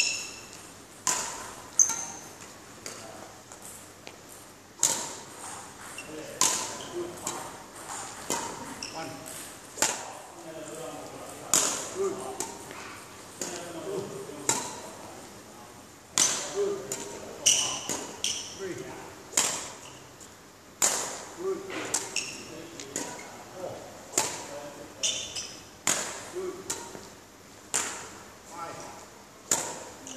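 Sports shoes stamping and squeaking on a hard indoor court floor during badminton footwork drills: a sharp footfall about every second, many followed by a short high-pitched squeak, in a reverberant hall.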